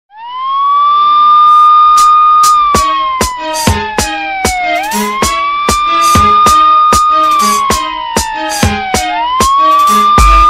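An emergency-vehicle siren wailing in slow cycles: it sweeps up, holds high, then slides down before sweeping up again. Music with a steady drum beat comes in under it about three seconds in.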